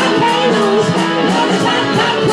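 Live band music: a melodic guitar line over a steady drum-kit beat.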